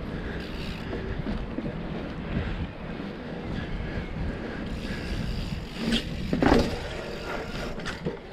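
A mountain bike's knobby tyres rolling over asphalt and then paving bricks, with a steady low rumble and wind on the microphone. A louder, brief clatter about six and a half seconds in.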